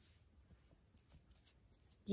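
Near silence, with faint light ticks and rustles from metal knitting needles and yarn being handled.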